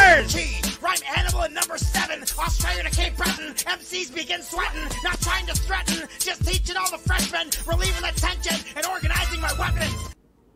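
Hip hop track: a man rapping over a beat with heavy bass hits. The music cuts off abruptly right at the end.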